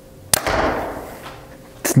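Bowtech Core SR compound bow shot: one sharp crack of the string releasing about a third of a second in, followed by a fading rush of noise.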